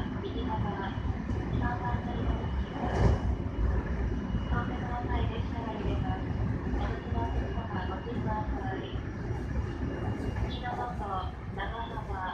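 Electric commuter train running at speed, a steady low rumble of wheels on rail heard from inside the front car, with a louder knock about three seconds in. Voices are heard intermittently over the running noise.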